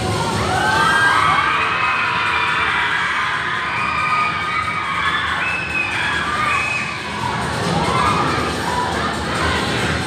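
Crowd of children shouting and cheering, many high voices rising and falling over one another, with a little music underneath.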